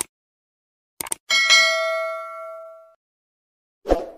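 Subscribe-button animation sound effects: two quick mouse clicks about a second in, then a notification-bell ding that rings and fades over about a second and a half. A short, soft hit follows near the end.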